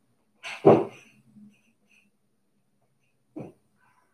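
A dog barks once, loud and short, about half a second in, and a much fainter short sound follows near the end.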